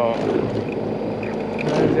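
A bowfishing boat's engine running with a steady low hum, with a man's voice at the very start and again near the end.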